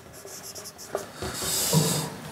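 Marker pen writing on a whiteboard: faint taps and short strokes at first, then a longer high-pitched squeaking stroke in the second half, the loudest part.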